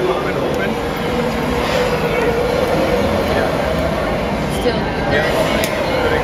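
Handheld gas torch burning with a steady rushing noise while its flame heats a glass bulb on a blowpipe, with voices in the background.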